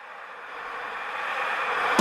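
A swelling hiss-like noise riser that grows steadily louder, building into the start of a song with plucked guitar right at the end.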